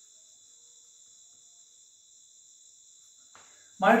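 Faint, steady high-pitched trill or whine that holds without a break; a man's voice starts speaking near the end.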